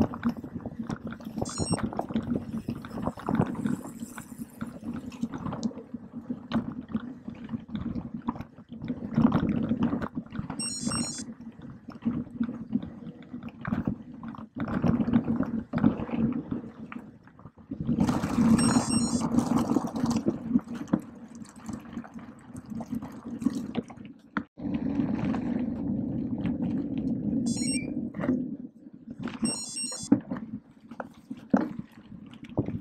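Mountain bike ridden fast over a rough dirt trail, heard close up from a mount on the bike: a steady rumble of tyres and rushing air, with constant rattling and knocking of the bike over the uneven ground. A few short high-pitched buzzing bursts come and go: near the start, about ten seconds in, just before twenty seconds and near the end.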